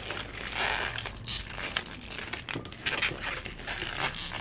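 Inflated latex 260 modelling balloon being twisted and squeezed by hand: irregular short rubbing and rustling of the rubber under the fingers.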